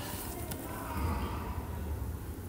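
Quiet room tone: a steady low hum, with a faint click about half a second in.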